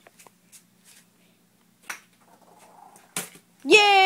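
Two short knocks, the second sharper, then near the end a child's long drawn-out shout held on one slowly falling pitch.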